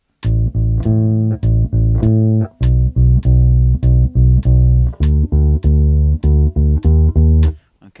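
Unaccompanied electric bass guitar played fingerstyle in a steady even rhythm. It plays a low A alternating with its octave, then a repeated low B, then D stepping up a half step to D-sharp, and stops shortly before the end.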